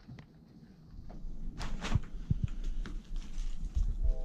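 Soft handling noises, a few dull knocks and a brief rustle as gloved hands pull a strip of loin meat loose from a hanging deer carcass. The first second is nearly quiet.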